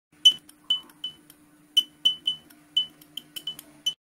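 Logo intro sound effect: about a dozen short, bright glassy clinks at uneven spacing, all on one high pitch, over a faint steady low hum. It stops just before the screen goes black.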